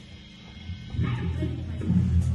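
Live band's amplified rig before a song: a low, steady amplifier drone, then about a second in a louder wavering sound swells up as the song is about to begin.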